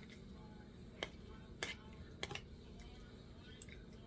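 A white plastic spoon scooping pasta salad out of a clear plastic container, with a few light clicks about a second apart as the spoon knocks against the container.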